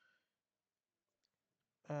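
Near silence, broken by one faint tick about a second in. A man's voice starts near the end.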